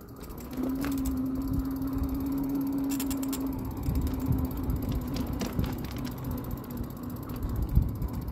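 Juiced Scorpion X e-bike riding along with its rear hub motor giving a steady whine, which starts about half a second in and fades after a few seconds. Under it runs a constant rumble of tyres on the path, with scattered clicks and rattles.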